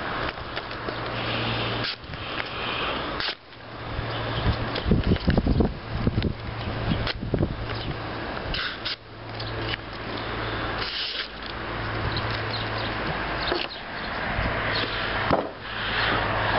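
Knife blade slicing through glossy magazine paper in a series of long cuts, the paper rustling and crinkling as it is cut, with short pauses between strokes. The edge has just been realigned on a honing steel and is cutting cleanly again.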